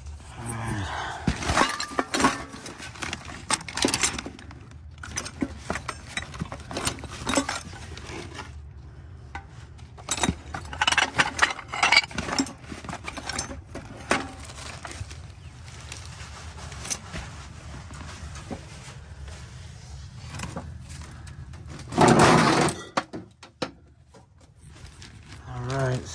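Hands rummaging through a box of junk: glass bottles clinking and knocking together amid plastic and paper rustling, in bursts of rapid clinks. A louder rattling crash of about half a second comes near the end.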